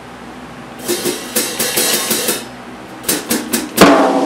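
Tama Starclassic Bubinga drum kit: a run of light, sharp taps about a second in, a short pause, then four quick taps counting in, and the full kit coming in with a loud crash and bass drum hit near the end.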